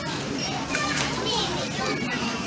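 Background voices of shoppers in a busy shop, with a child's voice among them, heard faintly under a steady general din.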